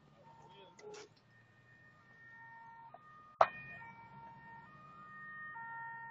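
Faint emergency-vehicle siren holding steady notes and stepping between a few pitches, with one sharp knock about three and a half seconds in.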